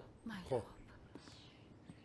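A man speaks one short word, then faint background hiss with a few faint ticks.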